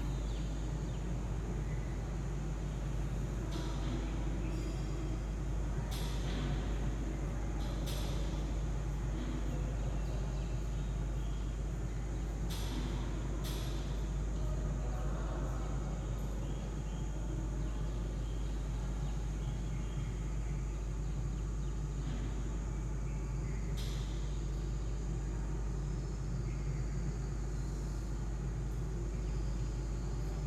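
Chalk scratching on a blackboard in short, sharp strokes every few seconds, over a steady low hum.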